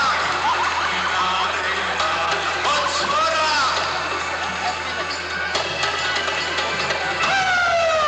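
Live band music from a Hindi film song performed on stage, with a melody line that slides up and down in pitch and a long falling note near the end.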